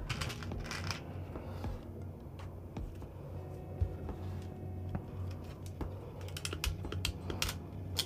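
Small, light clicks and rattles of hand tools and small parts being handled: plastic bootlace ferrules picked from a compartment box and diagonal cutters picked up, with the clicks coming closer together near the end. Quiet background music plays underneath.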